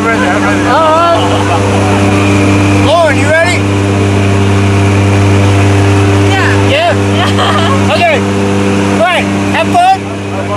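Steady drone of a skydiving plane's engines and propellers heard inside the cabin, loud and unchanging. People shout and laugh over it several times.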